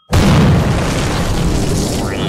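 An explosion sound effect: a sudden, very loud boom just after the start that keeps rumbling with a deep low end, easing only slightly.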